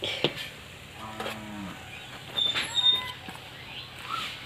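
Animal calls: a short low call with a slightly falling pitch about a second in, then louder, higher-pitched calls near three seconds. A sharp knock comes right at the start.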